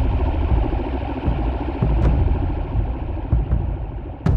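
Dark ambient electronic music: a dense, low rumbling texture with a sharp click near the middle.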